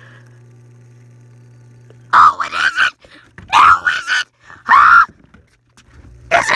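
A person's voice screaming in three loud, wordless cries, starting about two seconds in, over a faint low steady hum.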